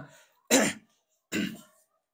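A man coughing twice into a close microphone, about half a second apart: the first cough is the louder, the second follows a little weaker.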